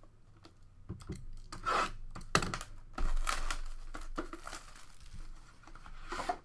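Plastic shrink wrap being torn and crinkled off a sealed trading-card box. The irregular crackling starts about a second in.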